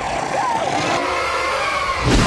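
Horror-film soundtrack: a woman's long, anguished scream blended with a harsh, steady rush of noise that holds at one level for the full two seconds.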